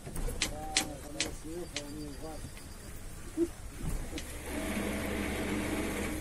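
Voices talking over the steady low hum of a tour boat's engine, with the hum and voices growing denser and louder in the last second and a half.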